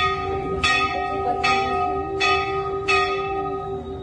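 Hindu temple bell struck repeatedly, about one strike every 0.8 seconds, each stroke ringing on into the next.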